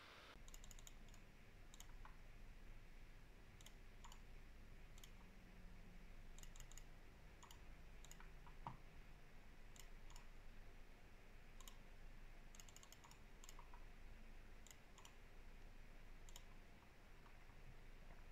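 Faint computer mouse and keyboard clicks, scattered and irregular, some in quick little runs, over near silence.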